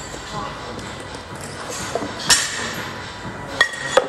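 Steel barbell and weight plates clinking as plates are taken off and slid onto the bar's sleeve: two sharp metallic clinks a little over a second apart, the second ringing briefly.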